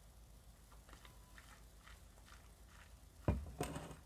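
A few faint clicks of ice cubes against a stemmed glass as gin is sipped, then a single loud thud about three seconds in as the glass is set down, followed by a short breathy rustle.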